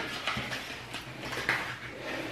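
Paper banknotes being handled and shuffled in the hands: a faint rustling with a few soft crisp clicks, the strongest about one and a half seconds in.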